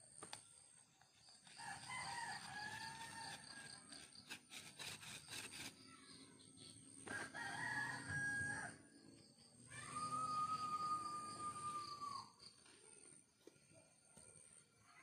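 Roosters crowing: three crows, the last a long held note that drops at the end. There are a few light knocks in between.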